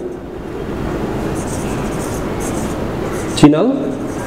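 Marker pen writing on a whiteboard: a run of short scratchy strokes over a steady background hiss. A man's voice sounds briefly near the end.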